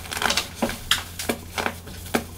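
Chunks of pressed baking soda squeezed and crumbled by hand, giving dry, irregular crunches and crackles, about six sharper cracks in two seconds.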